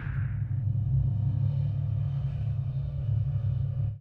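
A deep, steady rumble under the show's end logo, cutting off suddenly at the end.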